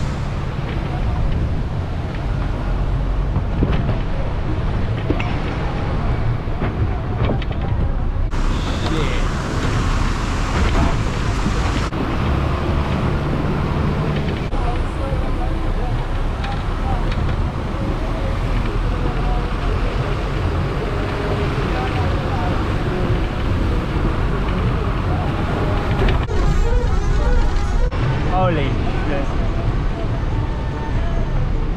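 A bus driving on a rough dirt mountain road, heard from on board: a steady engine drone with road and body noise and no pauses.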